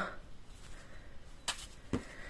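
Quiet rustle of yarn being handled on a tabletop, with one sharp tap about one and a half seconds in and a fainter one just before the end.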